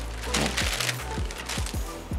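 Wax paper crinkling and crackling in bursts as it is peeled off epoxy-glued wood pieces, with a few light knocks of the wood, over background music.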